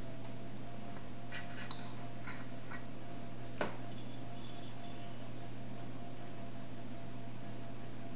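Steady low hum of room tone, with a few faint taps and clicks and one sharper click about three and a half seconds in, from hands pressing puff pastry circles into a metal mini muffin tin.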